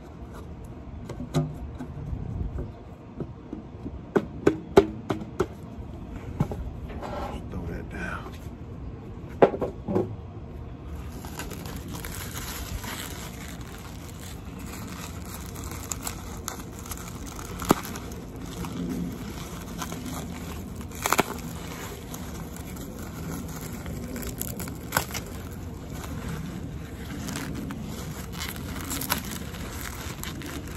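A cardboard rod tube being opened, with scraping and a string of sharp clicks. After about ten seconds this gives way to steady crinkling and crackling of bubble wrap as the wrapped fishing rod is drawn out and handled, with a few sharper snaps.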